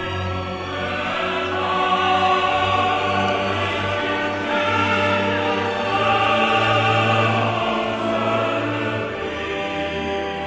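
Operatic chorus singing with full orchestra in sustained chords that swell twice, then soften near the end.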